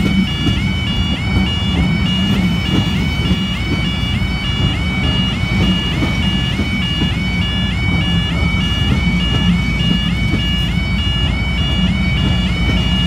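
Level crossing alarm sounding continuously, a rapidly repeating two-tone pattern, over the low rumble of passenger coaches rolling past on the rails.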